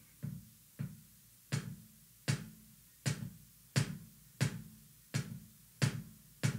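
Kick drum struck by its foot pedal, about nine even strokes roughly 0.7 s apart, the first two softer. These are weak flat-foot strokes, in which the beater sometimes bounces off the head for an unwanted double stroke.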